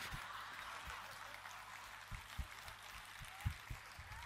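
Audience laughter fading away after a joke, heard as a low wash of many voices, with a few soft low thumps.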